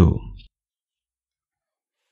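The end of a spoken word in the first half second, then dead silence.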